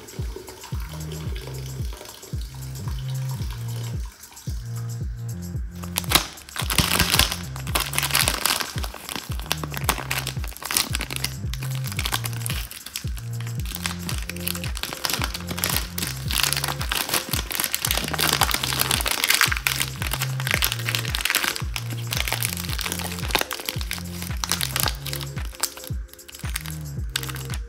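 Background music with a steady bass beat. Over it, a plastic gummy-candy packet is torn open and crinkled, loud and crackly from about six seconds in. Soda is being poured at the start.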